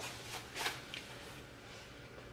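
A few faint, brief rustles from a person moving, her hands tossing her hair and her clothes shifting. The strongest comes a little over half a second in, and a last small one about a second in.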